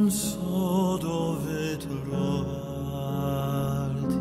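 Male voice singing a slow melody with vibrato, holding long notes, over soft instrumental accompaniment.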